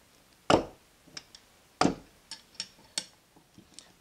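Sharp knocks as the Jabsco raw water pump's impeller assembly is gently driven onto its shaft: three loud strikes a little over a second apart, with lighter taps between them.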